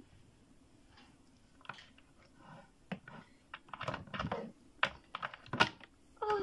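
Plastic wrestling action figures knocking and tapping against a hard shelf and each other, a run of irregular light clicks that starts about a second and a half in and is busiest around the middle.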